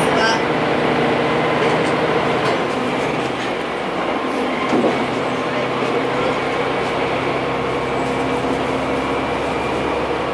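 Cabin noise of a diesel railcar under way: a steady engine drone and running noise, with the engine's low note changing a few seconds in.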